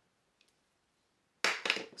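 Near silence, then a few light taps and clicks in the last half second as a tape measure is handled against a glass vase.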